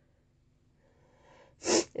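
A woman sneezing once, near the end, after a faint intake of breath.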